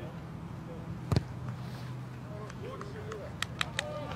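Boot striking a rugby ball once for a place kick: one sharp thud about a second in, over steady crowd murmur and distant voices, with a few short sharp taps near the end.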